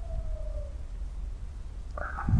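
Steady low hum with a faint, thin tone gliding down in pitch that fades out a little under a second in.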